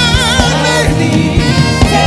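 Gospel praise team singing with a live band: a wavering lead voice over the group, with steady bass notes and regular drum hits.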